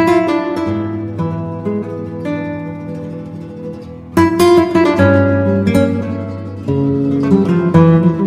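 Background music on acoustic guitar, plucked notes and strummed chords, with a sudden loud strummed chord about four seconds in.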